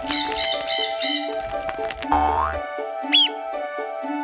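A cartoon parrot squawks loudly over cheerful background music, then a rising swoosh and a short high chirp follow about two and three seconds in.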